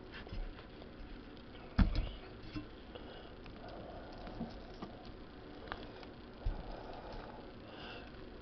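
Hands tearing apart a piece of fried chicken on a plate, the meat pulling off the bone: faint, soft squishing and rustling with a few small clicks, and one sharp knock about two seconds in.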